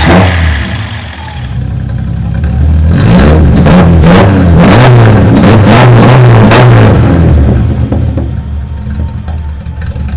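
Datsun 280Z's straight-six engine, running on a FAST EZ-EFI fuel-injection retrofit, revved loudly through its exhaust: a blip at the start, a string of quick revs through the middle, then settling back toward idle near the end.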